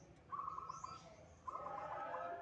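Caged zebra dove (perkutut) singing: two quick phrases of rapid, evenly spaced staccato notes, the second starting about a second and a half in with a lower note running beneath it. A bird in full, contest-class song ('gacor').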